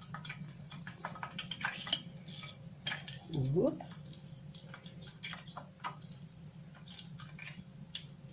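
Small scattered drips and ticks as artichokes are lifted with metal tongs out of a pot of warm confit oil: oil dripping back into the pot and the tongs tapping against pot and plate. One short hum of a voice about three and a half seconds in.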